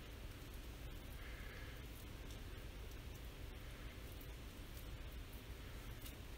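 Quiet, faint sounds of a fillet knife slicing connective tissue off venison on a wooden cutting board, with a few soft clicks over a steady low room hum.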